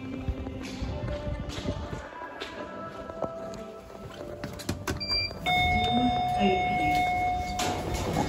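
Footsteps on a tiled floor, then a lift's call button pressed with a click and a steady electronic beep lasting about two seconds, over background music.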